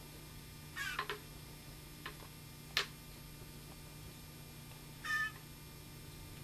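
Fledgling blue jay giving a few short, high, mewing calls, one about a second in and another about five seconds in, with a single sharp click a little before three seconds.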